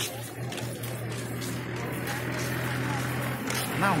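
A steady low hum under a faint, even background noise; a voice begins near the end.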